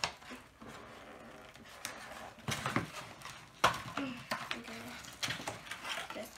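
Cardboard boxes being pulled open by hand: irregular rustling and scraping of the card, with a few sharper clicks, the loudest a little past halfway.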